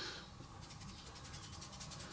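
Faint, soft rubbing of fingers sprinkling a pinch of paprika over grated cheese, over quiet room tone.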